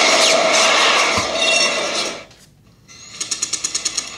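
Intro logo sound effect: a loud, dense whoosh for about two seconds. After a short gap, a rapid, even mechanical ticking begins near the end.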